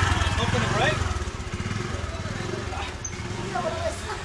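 Motorbike engine running at idle close by, a low rapid pulsing that becomes quieter after about a second.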